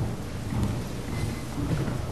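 Low, steady rumbling room noise with no speech.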